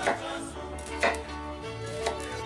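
Kitchen knife slicing through a smoked sausage and striking a wooden cutting board, two cuts about a second apart, over background music.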